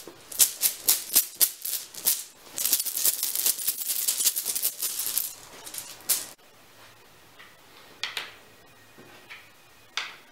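Coloured game chips being shaken and mixed in a bag, a dense rattling that stops about six seconds in. A few single clicks follow near the end.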